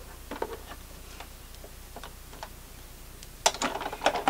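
Light, scattered clicks and taps of plastic embossing plates and thin metal cutting dies being handled and stacked, with a sharper click near the end.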